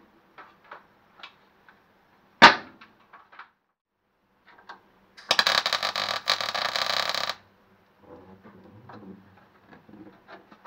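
MIG welder tacking a steel repair panel: one burst of rapid arc crackle about two seconds long, starting a little past the halfway point. Earlier, a single sharp knock about two and a half seconds in.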